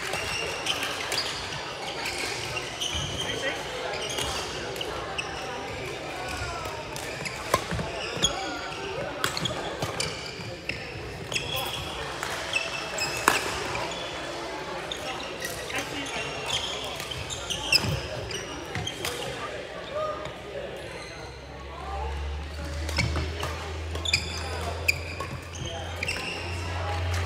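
Badminton rally sounds in a large indoor hall: sharp smacks of rackets striking the shuttlecock, short high shoe squeaks on the court floor, and a background of players' voices.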